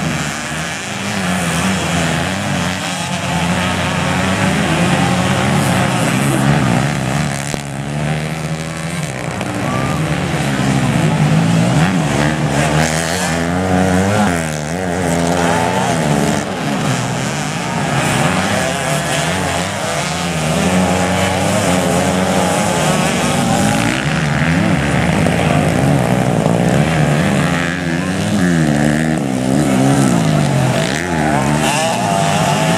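Several small dirt-bike engines racing together, their revs rising and falling over one another without a break.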